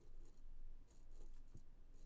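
Faint scratching of an ink pen drawing on heavy watercolour paper, with one low thump about one and a half seconds in.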